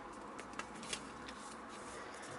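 Origami paper rustling softly as it is handled, folded and pressed flat by hand, with a few brief crisp crinkles.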